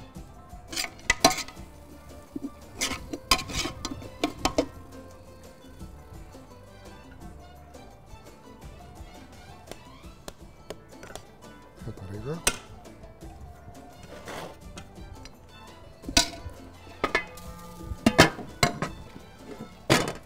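A metal serving spoon clinking and scraping against a metal cooking pot and an enamel plate as cooked biryani rice is dished out, in scattered clusters of sharp clinks, over background music.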